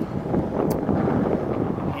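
Wind buffeting the microphone, a steady low rumble, with a brief click about two-thirds of a second in.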